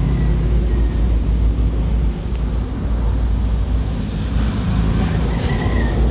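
Steady low rumble of background noise, loudest in the deep bass. A faint high thin tone comes briefly near the start and again near the end.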